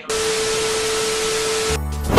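A burst of static-like hiss with a faint steady tone under it, cutting in abruptly as the music stops and lasting about a second and a half: an edited-in transition effect. Music with a beat comes back near the end.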